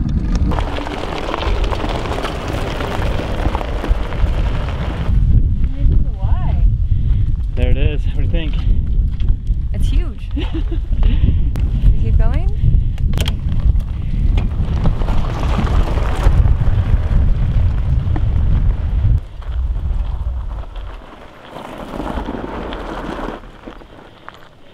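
Heavy wind buffeting and rolling rumble on a camera microphone carried on an electric fat-tyre off-road wheelchair moving over a gravel trail, with faint voices in the middle. The rumble drops away about nineteen seconds in, leaving quieter outdoor sound.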